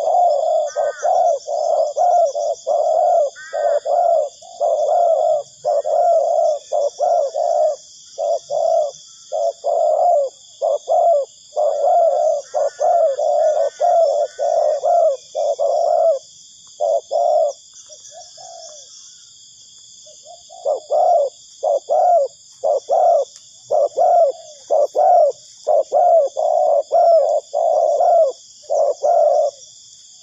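Spotted doves cooing in a rapid, continuous run of short coos, a couple each second, with a pause of about three seconds past the middle before the cooing resumes. A steady faint high-pitched hiss runs underneath.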